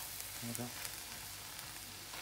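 Omelette pieces and onion frying in a pan: a steady sizzling hiss with small scattered crackles.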